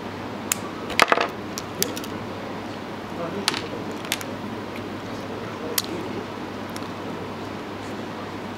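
A handful of short, sharp little clicks, the loudest cluster about a second in, from fingers handling a fishing hook and line while tying a knot, over steady room tone.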